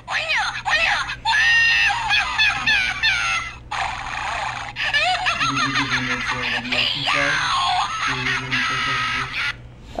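Novelty cat keychain playing its sound through a tiny speaker: a high, squeaky, fast-warbling voice that runs almost without a break and stops shortly before the end. It is kind of annoying.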